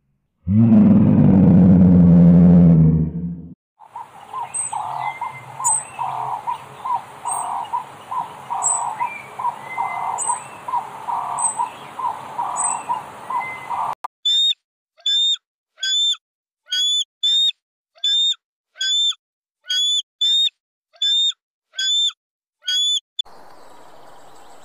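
A lion's deep growling call for about three seconds, then a run of rhythmic calls repeating a little under twice a second, then a bird chirping in a steady series of sharp high notes separated by short silences.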